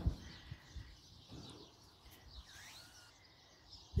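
Faint bird chirps and calls, including one call that dips and rises in pitch about halfway through, over quiet open-air background noise.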